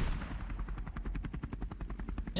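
Helicopter main rotor chopping in a rapid, even beat.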